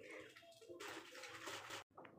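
Near silence: faint room tone, with a brief cut to dead silence near the end.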